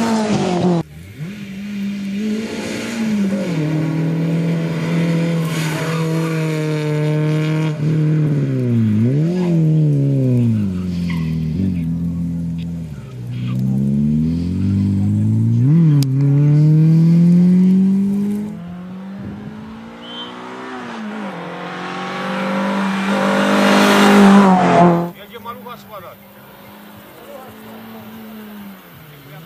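Renault Clio rally car's engine revving hard, rising and falling in pitch with each gear change and lift-off as it is driven flat out through tight corners. It is loudest on a close pass near the end, then cuts off suddenly.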